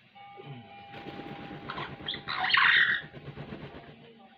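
Amazon parrot giving a loud squawk about two and a half seconds in, over a rustling flutter of its flapping wings.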